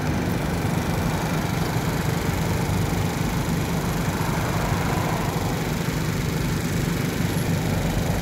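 Motor scooter engine idling steadily while stopped.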